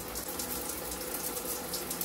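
Steady running tap water flushing through a detached lotion pump's dip tube to rinse out leftover lotion.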